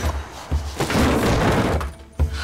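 Tense dramatic music with a loud crash starting sharply about half a second in and lasting just over a second.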